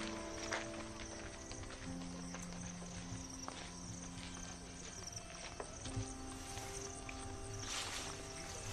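Background film score: sustained synthesizer chords that change pitch twice, over a soft low pulse, with a few faint clicks.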